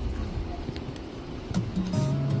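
Low outdoor rumble on the microphone with a few light knocks, then background music with held notes begins near the end.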